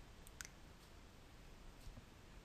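Near silence: room tone with a few faint, short clicks, one about half a second in and another near the end.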